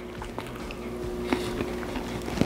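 A person chewing a mouthful of bagel sandwich, with a few small clicks, over a steady low hum.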